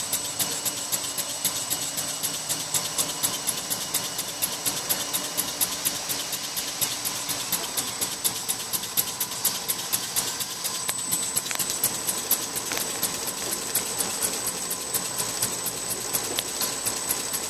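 Hot pin perforating unit running, with a fast, even ticking of several clicks a second over a steady high whine.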